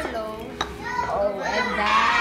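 Voices, with a short click about half a second in.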